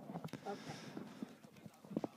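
Faint, scattered clicks and taps at irregular intervals in a quiet lull, with a faint low murmur about half a second in.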